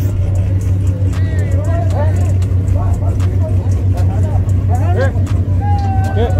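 Race cars idling at a drag-strip starting line before the launch, a steady deep engine rumble that stays even throughout, with spectators' voices calling out over it.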